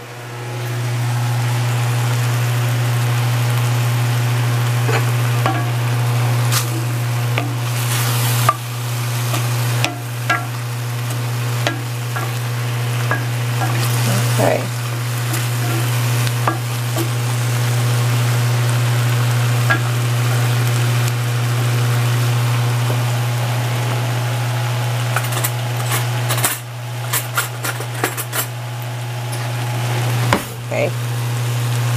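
Cubed beef chuck sizzling on high heat in an enameled cast-iron braiser, stirred with a wooden spoon that scrapes and knocks against the pan; the meat is cooking down in its own released juices. A steady low hum runs underneath and drops away for a moment near the end.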